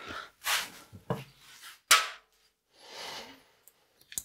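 A person moving about and handling things at a workbench: a few soft knocks and one sharp click in the first two seconds, then a short rubbing noise about three seconds in.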